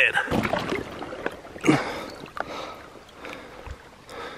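River water splashing and sloshing as a large rainbow trout is held and lowered into the stream by hand for release, several splashes over the first few seconds, with low handling rumble on the microphone.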